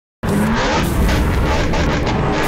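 Intro sound effect of a racing car engine, with music underneath, starting abruptly after a moment of silence and staying loud throughout.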